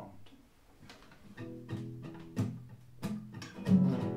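Nylon-string classical guitar being strummed. A string of chords starts about a second and a half in, with the strums growing louder near the end.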